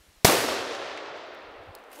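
A single shot from a Howa 1500 bolt-action rifle in .243 Winchester hitting a can of shaving cream, which bursts. It comes about a quarter second in with one sharp report, then dies away over about a second and a half.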